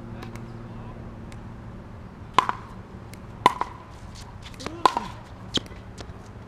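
Pickleball paddles hitting a plastic ball in a rally: four sharp hits roughly a second apart, starting about two seconds in, each with a brief ring. There is a softer tap just before the third hit.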